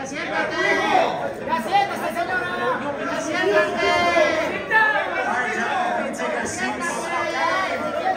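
Men's voices talking heatedly over each other at close range, several voices at once so that no clear words come through.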